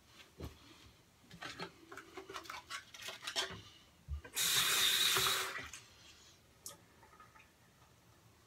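Bathroom tap water running for about a second, a little past halfway. Before it come light clicks and knocks of small items being handled at the sink, with a low thud just before the water starts.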